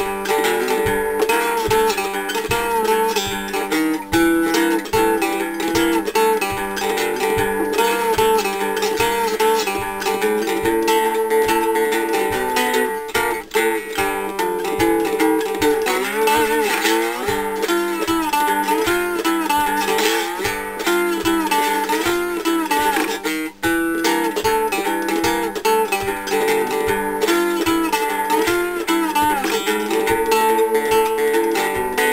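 Three-string cigar box guitar fingerpicked with a thumb pick and two finger picks in a quick, even stream of rolling plucked notes. A few notes waver and slide in pitch around the middle.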